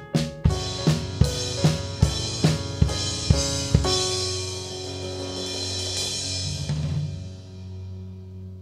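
Band's closing bars: a drum kit plays bass drum and snare hits on an even beat, about two or three a second, over sustained chords. At about four seconds in the hits stop and the band holds a final chord, which rings on and fades near the end.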